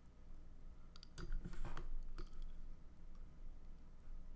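A few sharp computer mouse clicks, bunched between about one and two seconds in, over a low steady hum.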